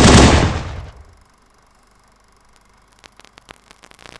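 A loud, sudden burst of noise that dies away over about a second, followed by near quiet and a few faint clicks near the end.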